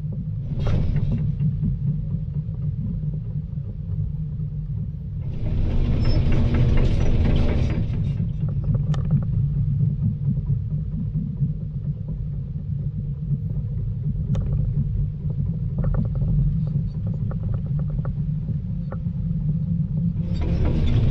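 Volvo EC220 DL excavator's diesel engine running with a steady low rumble. A louder burst of noise swells from about five to eight seconds in, and scattered sharp clicks and cracks follow later.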